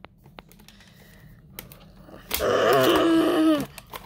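A person voicing a dinosaur roar: one drawn-out growl with a falling pitch, lasting a little over a second, coming after a couple of quiet seconds.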